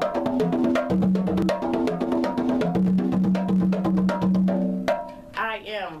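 Conga drums played by hand in a quick, dense go-go rhythm, with pitched open tones and sharp slaps over a sustained low note. The playing stops about five seconds in and a woman starts to speak.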